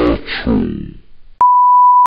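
A short burst of garbled, edited voice, then, about one and a half seconds in, a single steady electronic beep tone that starts and stops abruptly, like a censor bleep.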